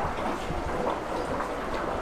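Steady low hum and hiss of fish-room equipment running.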